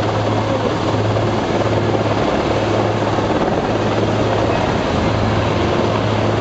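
Super Puma helicopter hovering low: a steady, loud rotor and turbine noise with a constant low hum, unchanging throughout.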